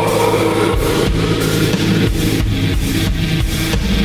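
Doom metal music: an instrumental passage of heavily distorted, low, sustained chords.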